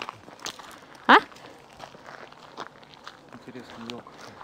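Footsteps of someone walking along a forest path. About a second in there is a brief, sharply rising voice sound.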